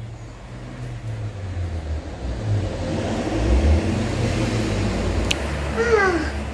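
A low, uneven engine rumble, like a motor vehicle running nearby, swelling through the middle, with one sharp click near the end. A child's short call follows at the very end.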